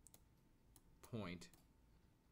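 A few faint clicks from a stylus tapping a tablet as digits are handwritten, with a brief spoken word about a second in.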